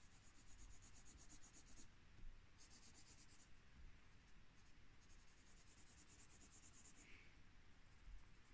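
Faint scratching of a felt-tip marker on paper as it colours in a small shape with quick back-and-forth strokes, coming in several runs of a second or so with short pauses between.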